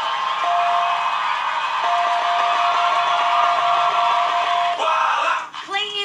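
Studio audience cheering, clapping and whooping, with one long held shout over the crowd; it dies down about five and a half seconds in.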